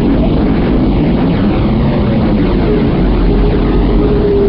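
A loud, steady low rumbling drone, with a held tone coming in about three seconds in.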